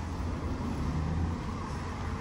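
Street ambience: a steady low rumble of road traffic.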